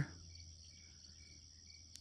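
Faint insect chorus: crickets giving a steady high trill, with a softer short chirp repeating about twice a second.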